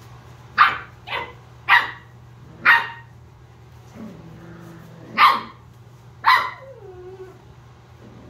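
Australian Shepherd puppy barking: six short, high yappy barks in two runs with a pause between, the last one trailing off into a short falling whine.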